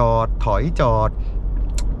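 Steady low drone of a Ford Everest's 2.0-litre single-turbo diesel and road noise heard inside the cabin while driving, under a man's speech, with a short click near the end.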